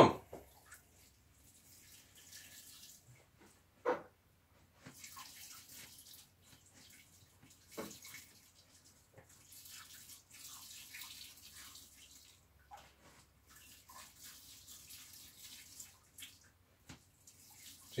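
Malted grain trickling from a hanging conical hopper into the mash tun. It is a soft hiss that comes and goes in stretches of a few seconds, with a couple of knocks from the release rod being worked, the loudest about four seconds in.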